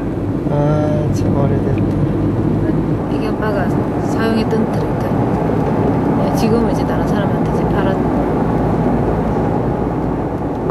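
Steady road and engine noise inside a moving van's cabin, a constant low rumble under a woman's speech.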